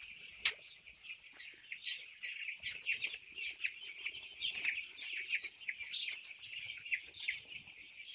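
A flock of eight-day-old chicks peeping, a dense chorus of short high chirps overlapping one another. A sharp click sounds about half a second in.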